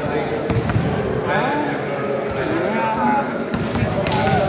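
Volleyball being struck: sharp hand-on-ball hits about half a second in and again near the end, over steady crowd chatter and shouts.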